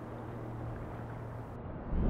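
Low, steady rumbling storm-at-sea ambience with a faint steady hum underneath. The hum fades out near the end.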